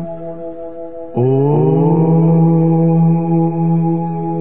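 Steady meditation drone music; about a second in, a deep, sustained chanted note comes in louder over it, its overtones sweeping upward as it settles, like a mantra chant.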